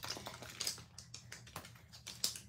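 Clear plastic case and sheets of a photopolymer stamp set being handled: a few light plastic clicks and crinkles.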